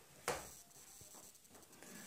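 Quiet indoor room tone with one short soft knock about a quarter second in, then a few faint ticks.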